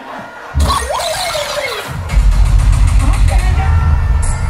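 Live dancehall music through a concert sound system: the beat drops out at first, a voice and a burst of noise come in about half a second in, and the heavy bass beat comes back about two seconds in.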